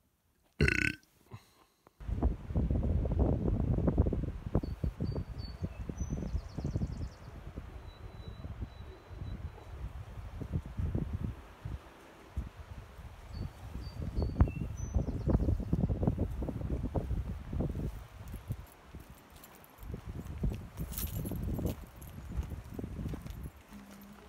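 Footsteps crunching and sliding on loose rock scree while walking down a steep slope, uneven and irregular, with wind rumbling on the microphone. A short sound less than a second in, before the steps start, and a few faint high chirps around five and fifteen seconds in.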